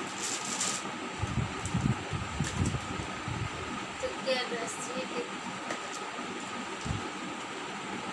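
Grocery packets and small cardboard boxes being handled and unpacked, giving irregular low bumps and rustles over a steady background hum.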